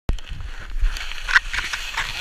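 Plastic sled scraping and sliding over icy, crusty snow as the rider pushes off and starts down the slope: an irregular scraping hiss over a low rumble, with a louder scrape about two-thirds of the way through.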